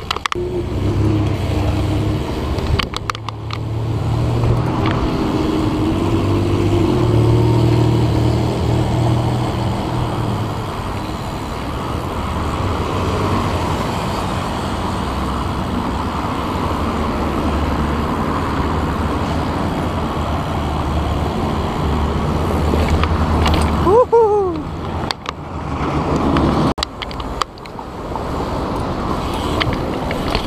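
City street traffic, a steady low engine rumble from nearby cars, heard from a moving bicycle. A short falling tone sounds about 24 s in, and the sound drops out briefly a few times near the end.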